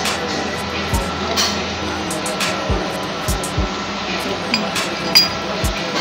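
Ceramic cups and crockery clinking at irregular moments, with a few light knocks, over steady background music.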